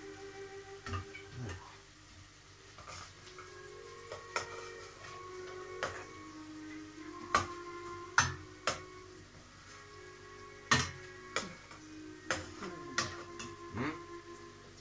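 A spoon clinking and scraping against a stainless steel pot as it is stirred, with about ten sharp knocks at uneven intervals, most of them in the second half. Music plays in the background throughout.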